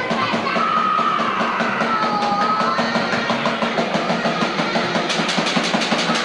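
Punk band playing live, with electric guitar and steady fast drumming, caught on a camcorder's built-in microphone.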